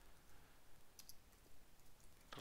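Faint computer keyboard keystrokes: a few scattered clicks, with a sharper pair about halfway through.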